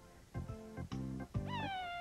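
Background music with a steady beat; near the end a single short high call that rises briefly and then slides down in pitch, like a meow.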